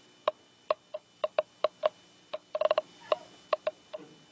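Radiation counter's audio clicker giving irregular counts, about five clicks a second and sometimes bunched together, as its probe measures gamma radiation with the high-grade uranium ore rock held behind the presenter's body.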